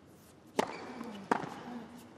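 Tennis ball struck by rackets on a hard court: two sharp hits about three-quarters of a second apart, with a short exclaimed 'Oh' over the first.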